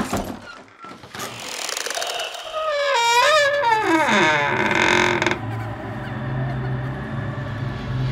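Horror intro sound effects: a sharp hit, then rising noise and a long door creak whose pitch wavers and slides down. About five seconds in it gives way to a low, steady drone.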